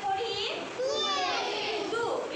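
Young children's voices speaking, several at once.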